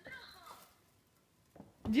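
Mostly speech: a faint, brief child's voice at the start, a light knock a little later, then a woman's voice calling a name loudly near the end.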